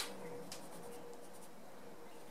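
Coloured pencil rubbing lightly over paper in short strokes as a small area is coloured in. There is a sharp click right at the start and a softer one about half a second in.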